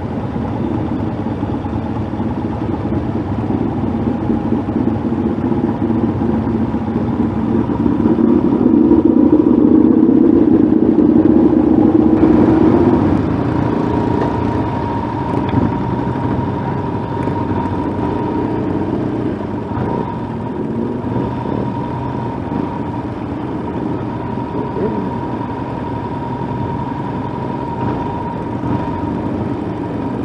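Several motorcycle engines running in a group, heard from one of the bikes as it sits at a standstill and then moves off slowly with the others; the engine noise swells for a few seconds before the midpoint, and a steady whine runs through the second half.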